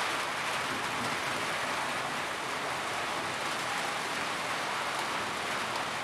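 Steady rain falling.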